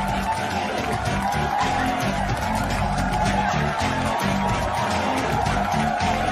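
Background music with a steady, rhythmic bass line under a sustained mid-range tone.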